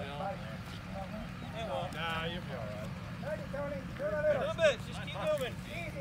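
Several men talking and calling out in the background, loudest about four to five seconds in, over a steady low rumble.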